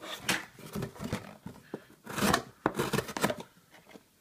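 Benchmade Griptilian folding knife blade slicing through a cardboard box in a series of rasping strokes with a few sharp clicks. The cutting stops shortly before the end.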